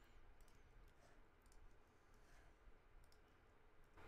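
Near silence, with a few faint, scattered clicks from computer keyboard and mouse use while text is being edited.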